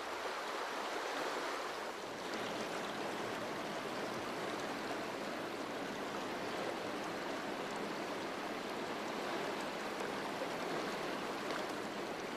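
Steady rushing of a fast-flowing river.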